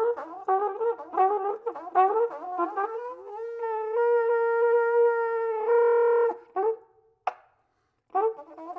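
Solo flugelhorn playing a contemporary piece: a run of quick, short notes with bending pitch, then one held note of about two seconds that turns rough and noisy before it cuts off. A short note and a single sharp click follow, then near silence.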